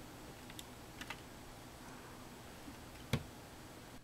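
Faint clicks and taps from hands handling the open Dell Wyse 5010 thin client's chassis, with one sharper click about three seconds in, over a low steady hum.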